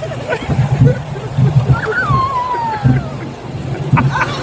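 Roller coaster ride noise: wind buffeting the phone's microphone over the low running noise of the coaster train. There is a laugh near the start, and a long falling tone about two seconds in.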